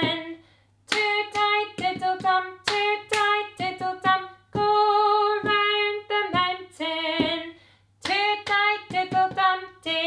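A woman singing a children's cup-game song loudly and unaccompanied, with sharp taps of two plastic cups on the floor keeping time with the words. There are short pauses between the sung phrases.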